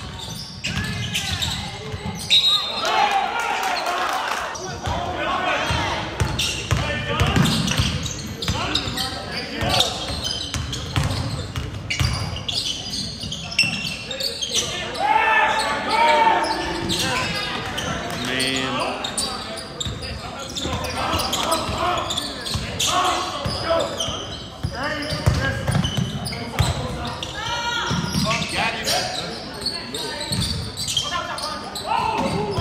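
Basketball game sounds in a gymnasium: the ball dribbled on the hardwood court in repeated knocks, under a steady mix of players' and spectators' voices echoing in the hall.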